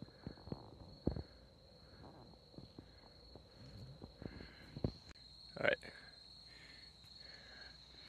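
Footsteps crunching irregularly on a gravel and dirt trail, with one louder scuff about two-thirds through, over a steady high-pitched insect trill.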